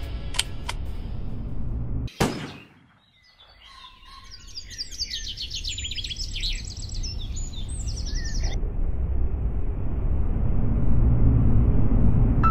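Soundtrack music cut off by a single sharp, loud bang about two seconds in. After a brief hush, songbirds chirp in quick repeated trills for about five seconds. A low rumble then swells toward the end.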